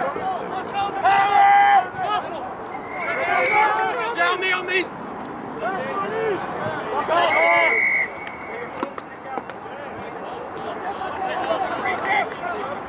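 Voices shouting and calling out over an outdoor rugby pitch, several loud drawn-out shouts among general chatter.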